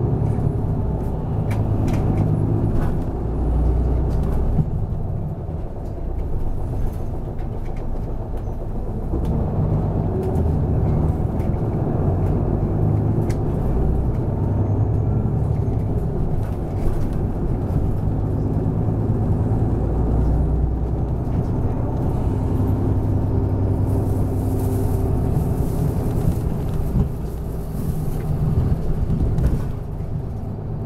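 Interior sound of a city bus under way: the diesel engine and road noise running steadily, with a stretch of higher hiss near the end.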